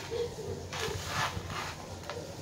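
Garden soil being scooped and shifted with a small hand trowel, heard as about a second of scraping and rustling, after a brief low hum near the start.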